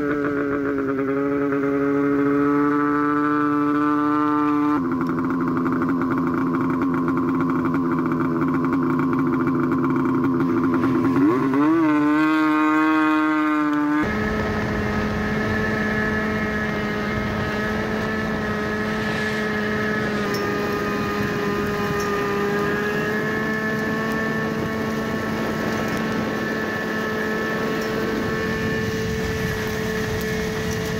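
Old Yamaha Phazer snowmobile's two-stroke engine running under way at a steady pitch. Its pitch drops at the start, jumps abruptly a couple of times and wavers briefly near the middle.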